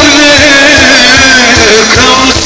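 Loud live folk dance music: a held melody line that slides in pitch over a steady drum beat.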